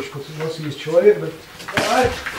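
Speech in a voice not caught by the transcript, with one short sharp knock or slap a little before the end.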